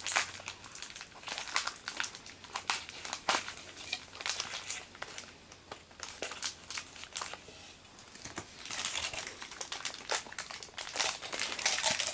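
Plastic packaging crinkling and crackling in irregular bursts as Beyblade parts are worked out of their wrapping by hand, with a quieter spell a little past the middle.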